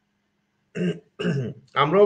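A man's voice after a moment of dead silence: two short vocal sounds, then speech begins.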